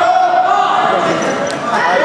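Voices shouting during a wrestling bout, drawn-out calls with no clear words. A short sharp knock about one and a half seconds in.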